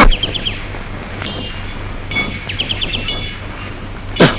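Several short, high clinks in small groups over a low steady hum, like metal or glass striking lightly.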